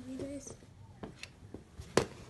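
A child's brief wordless vocal sound at the start, then a few light clicks and a single sharp knock near the end.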